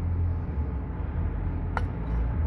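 A copper refrigerant line being cut with hand cutters beyond the pinch-off tools: one sharp snap near the end over a low steady rumble.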